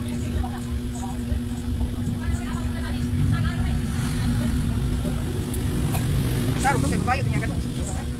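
A steady low rumble with a constant hum runs throughout, with faint voices in the background.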